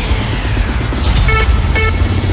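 Bhojpuri DJ remix music at a dense, noisy build-up, with rapid low pulses and two short synth stabs in the second half.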